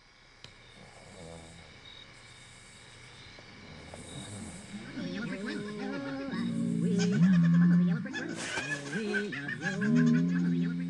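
Eerie, off-key wailing, a warbling voice rising and falling in pitch like strange singing. It is faint at first and grows louder over several seconds.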